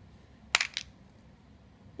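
Two light, sharp clicks a quarter second apart: small acrylic plugs knocking against each other or against the hard plastic compartment organizer as they are handled.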